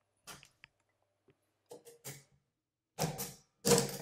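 Mechanism of a 1910 Herzstark Austria Model V step-drum mechanical calculator being worked by hand: a few light clicks, then two louder metallic clatters about half a second apart near the end.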